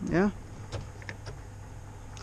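A short spoken "yeah", then a few faint small clicks of plastic as the small plastic end cover is worked off an Audi Q7 exterior door handle, over a steady low hum.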